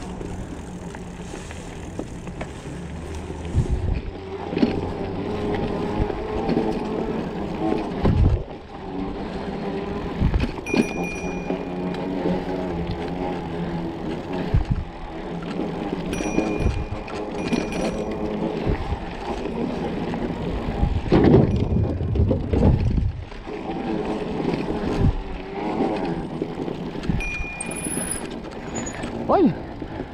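Mountain bike rolling over a dirt singletrack: steady tyre and frame rumble broken by many sharp knocks and rattles as the bike hits bumps and roots, with a few brief high-pitched tones.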